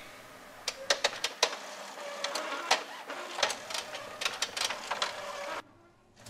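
Epson XP-610 inkjet printer running as it prints onto a disc in its CD tray: a steady mechanical whirr with a faint hum and scattered clicks, which stops suddenly near the end.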